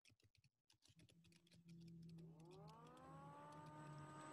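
Faint computer keyboard typing, light scattered key clicks, fading out after about a second. A low hum then comes in, and a couple of seconds in a set of tones rises in pitch and settles steady, like a small motor or fan spinning up to speed.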